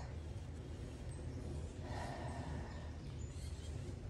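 Faint outdoor background noise: a low steady rumble with a light hiss and no distinct events, the hiss swelling softly about two seconds in.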